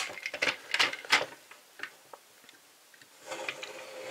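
Plastic toy robot's crocodile-head arm having its jaw opened and closed by hand: a quick run of sharp plastic clicks in the first second and a half, a few more after, then soft handling rustle near the end.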